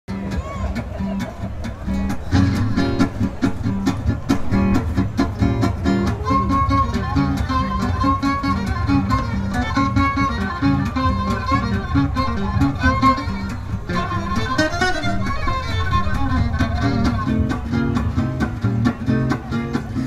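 A live acoustic string band plays an instrumental introduction. Double bass and two strummed acoustic guitars keep a steady beat, while a violin plays the melody over them.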